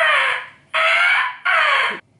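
Pig squealing: three loud, shrill squeals about three-quarters of a second apart, each falling in pitch.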